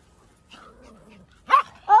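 A small dog barks once, sharply, about one and a half seconds in, after a stretch of quiet.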